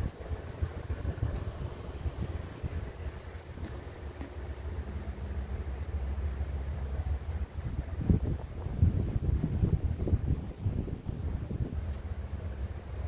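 Sea wind buffeting the microphone with a steady low rumble, the gusts growing stronger about two-thirds of the way through. Over it a high insect chirp repeats about twice a second, dropping out near the end.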